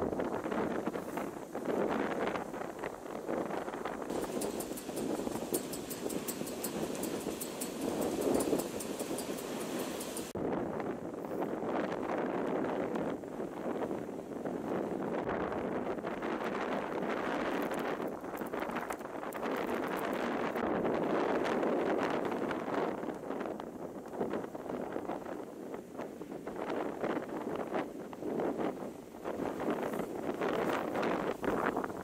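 Storm wind buffeting the microphone over the steady rush of heavy surf breaking and washing up a sandy beach, rising and falling with the gusts. A high hiss drops away about ten seconds in.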